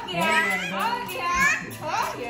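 Infant crying in distress at having her ears pierced, with adult voices talking over the cry.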